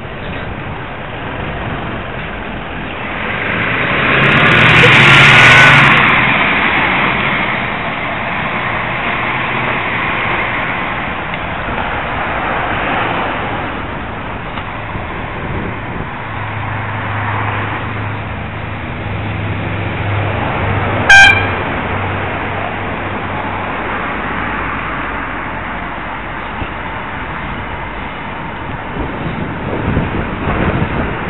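Wind and road traffic rushing past a moving bicycle's camera, with a vehicle passing close about four to six seconds in. About 21 seconds in, a car horn gives one short toot.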